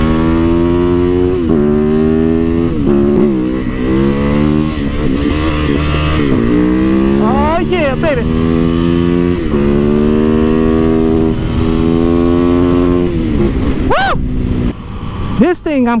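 Yamaha YZ450FX supermoto's single-cylinder four-stroke engine pulling hard through the gears, its pitch climbing in each gear and dropping back at each upshift, several times over, before easing off near the end.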